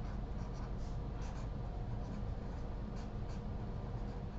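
Felt-tip marker writing on paper: a series of short scratchy strokes as letters are drawn, over a low steady hum.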